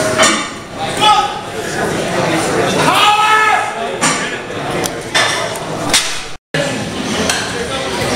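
Men yelling encouragement at a lifter during a powerlifting squat attempt, with one long drawn-out shout about three seconds in and a few sharp knocks. The sound drops out for a moment near the end.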